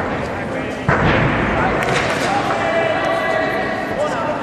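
Background voices and crowd noise in a gymnastics arena, with a sudden thud about a second in after which the noise stays louder.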